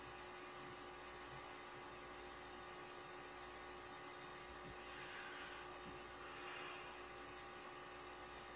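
Quiet room tone: a faint steady electrical hum with a thin held tone, and a slight soft swell of noise about five and six and a half seconds in.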